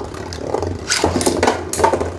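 Beyblade spinning tops in a plastic stadium: one top spinning steadily as a second is launched from a launcher. There are sharp plastic clacks about a second in and again near the end.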